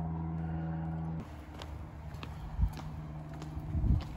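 A steady low mechanical hum that cuts off abruptly about a second in, followed by a few soft thumps of footsteps on concrete.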